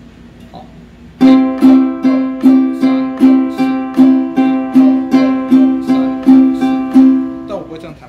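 Ukulele strummed down and up in a steady eighth-note rhythm, about two and a half strums a second, starting about a second in and stopping shortly before the end.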